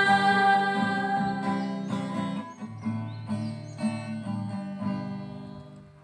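Acoustic guitar strumming the closing chords of a song, a slow series of strokes dying away into a last ringing chord near the end. A held note from a group of women singing fades out in the first second or so.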